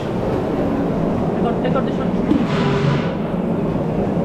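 Background chatter of several voices over a steady low rumble, with a brief hiss about two and a half seconds in.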